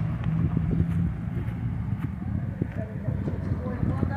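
Street ambience with a steady engine hum from traffic that fades about a second in, and irregular soft thuds of footsteps on grass.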